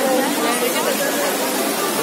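Steady rush of the Trevi Fountain's cascading water under the chatter of a large crowd of tourists.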